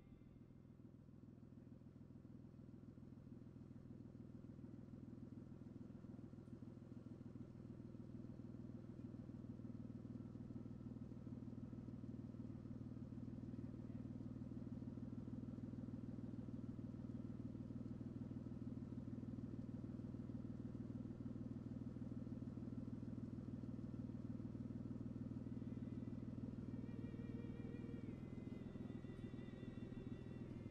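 A low, steady rumble that swells slowly over the first half and then holds, with faint music coming back in near the end.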